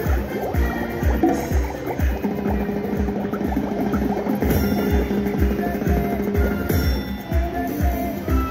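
Gold Fish video slot machine playing its bonus-round music: a steady beat about twice a second, with a long held note from about two seconds in until near the end.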